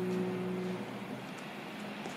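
The last chord of the song ringing out and fading away within the first second, leaving a faint steady hiss.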